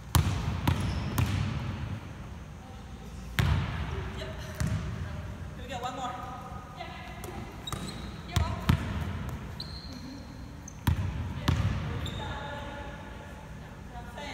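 Basketball bouncing on a hardwood gym floor: about ten sharp, unevenly spaced bounces that echo in the large hall.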